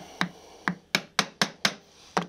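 A brass-headed mallet tapping a bench chisel down into the waste between dovetail pins: six light, sharp taps, the first two about half a second apart, then about four a second. The chisel is chopping a little at a time down on the marking-gauge line of the joint's show side.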